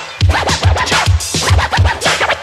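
Hip hop DJ mix with turntable scratching: a record is worked back and forth in quick, repeated strokes, and the steady bass line of the beat drops out.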